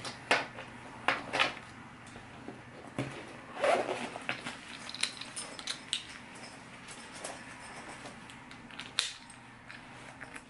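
Handling noise of a bag's strap and buckle as a belt bag is put on and fastened around the waist: rustling fabric and strap, with several sharp clicks and light clinks.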